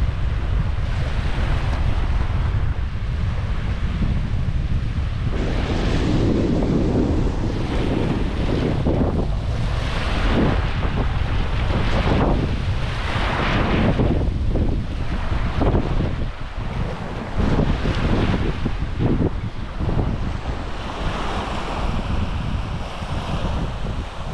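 Wind rumbling steadily on the microphone, with small waves washing up onto a sandy shore in irregular swells.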